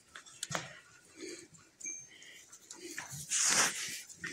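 Goats moving about in straw bedding: faint rustles and small clicks, with a short breathy rush a little past three seconds in, the loudest moment.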